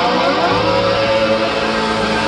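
Rock band playing live at full volume: two electric guitars with bass and drums.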